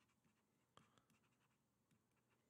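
Near silence, with faint taps and scratches of a stylus writing on a tablet; the clearest tick comes a little under a second in.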